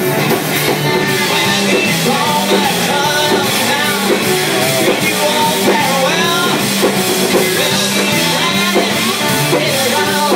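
Live blues-rock band playing loudly: guitars over a drum kit with cymbals.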